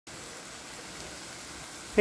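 Diced butternut squash and green beans sizzling steadily in a little chicken stock in a nonstick frying pan.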